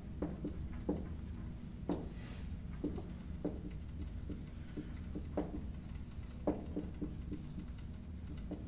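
Dry-erase marker writing on a whiteboard: short, irregular taps and strokes over a steady low room hum.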